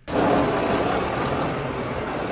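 Heavy truck engine running close by, a loud steady rumble that starts abruptly and slowly fades.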